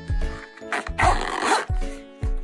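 Zipper on a fabric zip-around card case being pulled closed: one pull lasting about a second, starting a little under a second in, over background music.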